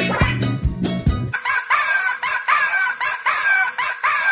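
Music with a bass beat runs for about the first second, then drops out. A sped-up, high-pitched cartoon rooster voice follows, repeating short falling calls about three times a second.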